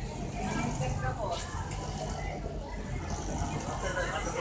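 Steady low machinery hum in a factory, with people talking in the background.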